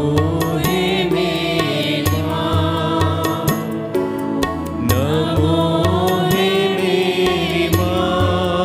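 Group of women singing a devotional hymn into microphones, with instrumental accompaniment and a regular low bass pulse underneath. One sung phrase ends about four seconds in and the next begins a moment later.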